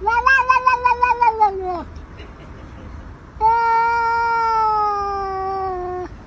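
Domestic cat giving two long, drawn-out meows. The first lasts nearly two seconds, wavers in pitch and falls away at its end. After a short pause, a second, steadier call starts about three and a half seconds in and slowly drops in pitch.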